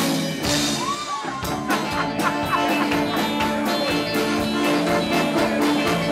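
A live band playing an upbeat song: piano accordion and electric guitar over a steady drumbeat.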